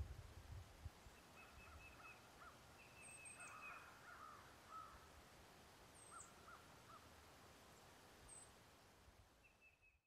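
Faint outdoor ambience with birds calling on and off: short trills, repeated arched notes and a few high chirps, over a low rumble in the first second.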